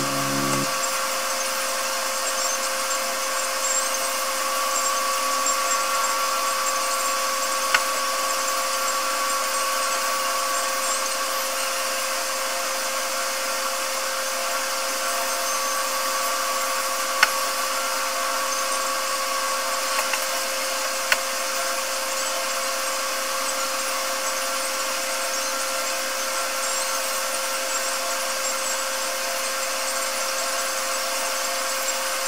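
A small motor running steadily, an even hiss with a constant whine, broken by three short sharp clicks.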